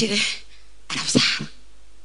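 A woman's voice through a microphone in two short, breathy bursts about a second apart, with quiet pauses between them.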